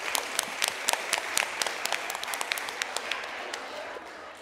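A room full of people applauding, the clapping thinning out and getting quieter toward the end.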